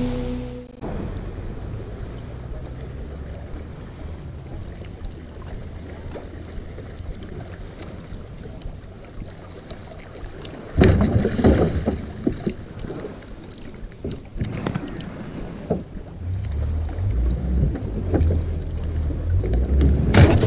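A boat's outboard motor running low and steady, growing louder over the last few seconds as the boat is driven up onto its trailer. From about halfway, wind and water noise crackles on the microphone.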